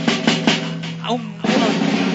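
Dance music led by a drum kit playing a run of even hits, about five a second, over a held bass note. A sustained cymbal wash comes in about a second and a half in.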